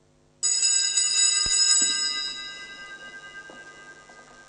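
A set of small altar bells is shaken for about a second, starting suddenly, and then rings out and fades over the next few seconds. The bells mark the consecration at Mass.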